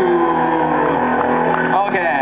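Live band playing through the stage PA: sustained, droning amplified notes whose pitches slide slowly downward, with a quick upward sweep near the end.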